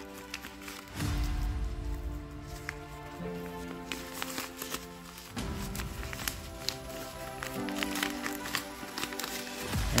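Soft background music of held chords that change about every two seconds, with light crinkling and small taps from a plastic wrapper being worked open by hand.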